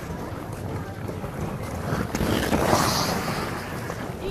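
Outdoor ice-rink ambience: a steady noisy rush with wind on the microphone and the scraping of skates on ice, swelling louder about two seconds in and easing off near the end.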